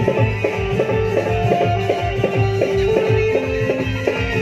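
Live stage band playing an instrumental passage: a keyboard melody of held, plucked-sounding notes over a steady low drum beat about twice a second.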